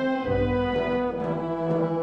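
Band playing a slow funeral march: the brass hold sustained chords that change slowly, over a steady beat about twice a second.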